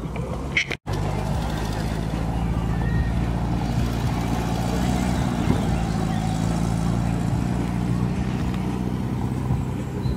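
A vehicle engine idling steadily, with voices in the background. The sound breaks off briefly just under a second in.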